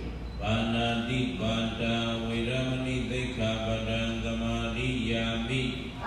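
A low male voice chanting a Buddhist recitation on long held notes that step between a few pitches, with short breaks for breath.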